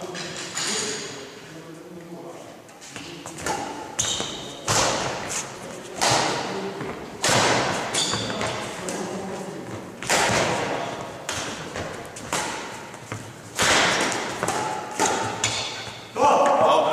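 Badminton rackets striking a shuttlecock in a doubles rally, sharp hits about once a second from a few seconds in, each ringing on in the echo of a large sports hall.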